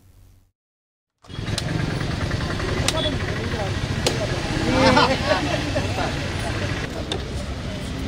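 After about a second of silence, street sound comes in: a steady engine rumble under the talk of a gathered crowd, with a few sharp knocks.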